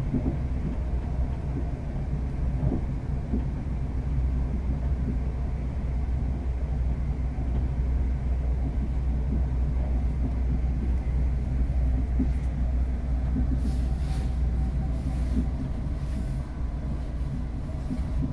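Steady low rumble of a Class 350 Desiro electric multiple unit running along the line, heard from inside the passenger carriage.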